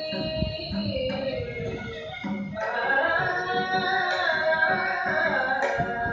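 Carnatic classical performance in raga Nadavinodini: a woman sings gliding, ornamented phrases, shadowed by a violin, with occasional mridangam strokes. The music grows fuller and louder about halfway through.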